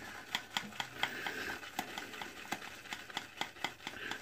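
Shaving brush being loaded on a puck of shave soap: faint scrubbing of bristles on the soap with irregular light clicks, several a second.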